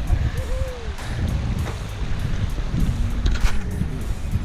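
Wind buffeting the camera microphone outdoors: a steady low rumble with gusty bumps.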